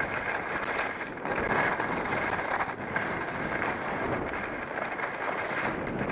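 Steady rushing noise of skiing downhill: wind buffeting a helmet-mounted camera microphone, mixed with skis sliding and scraping over packed snow.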